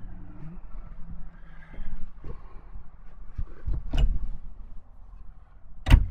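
Low, steady rumble of nearby highway traffic, with a few light knocks and a sharp knock just before the end.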